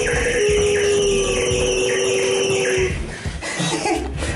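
Small home elevator running, a steady whine over a hiss, which stops about three seconds in as the car arrives at the floor.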